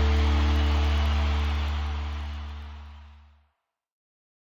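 Background music ending on a held chord with a strong bass note, fading out steadily until it stops about three and a half seconds in.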